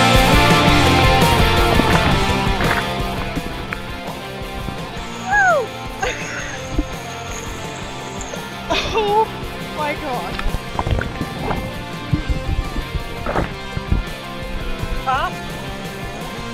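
Rock music with guitar fades out over the first few seconds. After that, water sloshes and knocks around a camera held at a pool's surface, with a few brief shouts.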